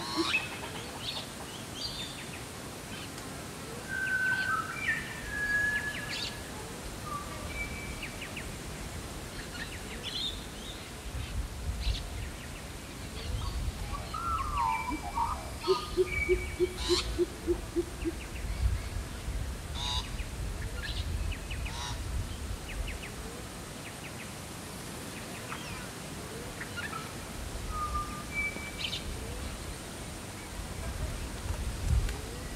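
Pheasant coucal giving a quick, even series of about ten deep hoots about halfway through, among whistles, chirps and short calls from other bush birds.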